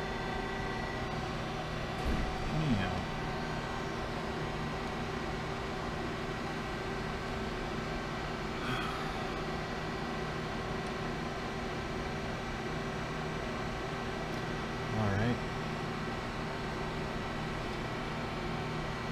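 Steady machine hum with several constant tones, with a brief murmured voice about two seconds in and again about fifteen seconds in.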